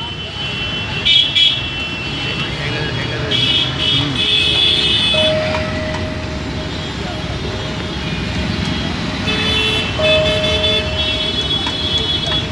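Busy street traffic noise with vehicle horns sounding several times, and voices in the background.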